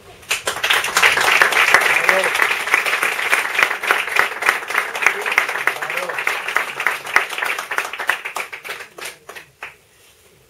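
A small audience applauding: dense clapping starts just after a poem ends, holds steady, then thins to a few last scattered claps near the end and stops.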